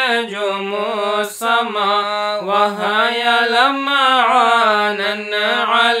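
A single voice chanting an Arabic qasida unaccompanied. It holds long lines whose pitch turns and glides up and down, broken by short breaths about a second in and again around two and a half seconds.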